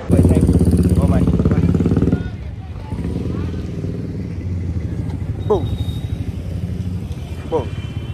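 Motorcycle engine running close by, loud for about the first two seconds, then an engine hum carrying on more quietly. There are a couple of short falling chirps later on.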